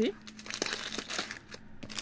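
Clear plastic wrapper around shortbread biscuits crinkling irregularly as it is handled, pausing briefly near the end.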